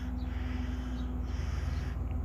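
Faint short bird chirps, a few high quick notes, over a low steady rumble and a faint steady hum.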